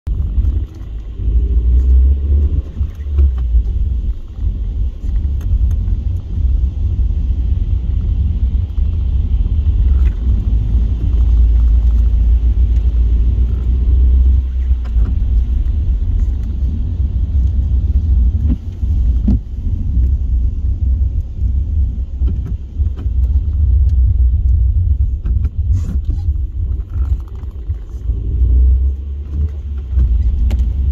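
Car driving on a wet road, heard from inside the cabin: a steady deep rumble of road and engine noise.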